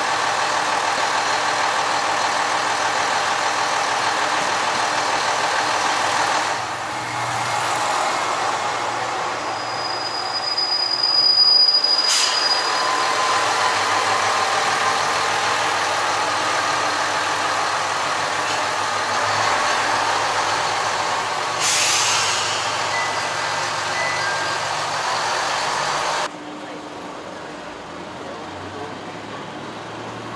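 Diesel railcar pulling into the station, with a thin high squeal from wheels or brakes around ten to twelve seconds in as it comes to a stop. It then runs at idle at the platform. The sound cuts off suddenly a few seconds before the end.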